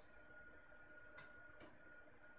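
Near silence: room tone with a faint steady high tone and two faint clicks a little past a second in.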